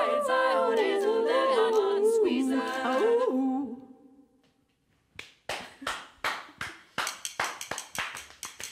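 Layered a cappella female vocals built up on a loop pedal, the final phrase fading out about four seconds in. After a moment of near silence, clapping begins about five seconds in and continues in irregular claps.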